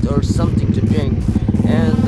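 Suzuki Raider 150 motorcycle engine running steadily at low road speed, heard from the bike while riding in street traffic, with a voice talking over it near the end.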